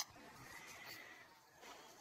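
Near silence: a single short click at the start, then faint room noise.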